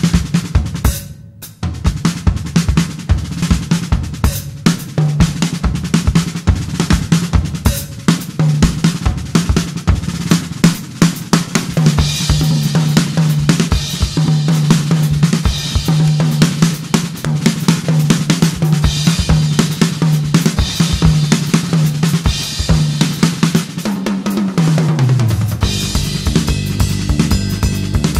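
Live jazz-fusion band music with the drum kit to the fore: fast snare, bass drum, hi-hat and cymbal strokes over a low held note that slides down near the end.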